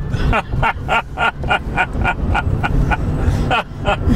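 A man laughing in a quick run of short "ha" bursts, which stops about two and a half seconds in and picks up briefly near the end, over the low road rumble inside the pickup's cab.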